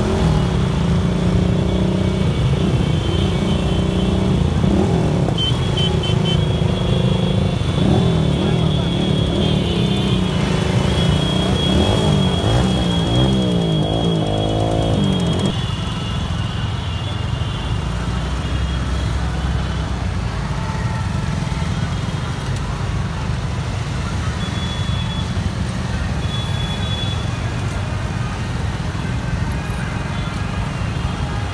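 Many motorcycle engines running together in a slow-moving rally, with rising and falling revs through the first half. About halfway through this stops abruptly, leaving a steadier, slightly quieter road rumble.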